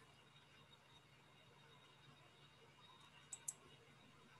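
Near silence, with two faint clicks in quick succession a little after three seconds in.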